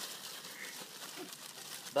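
Plastic bag crinkling as it is emptied of halibut pellets over a bowl of wet bait mix.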